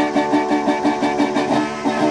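Resonator guitar strummed in a steady, quick rhythm, with a harmonica playing sustained, wavering notes over it.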